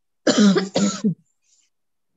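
A person coughing twice in quick succession, loudly.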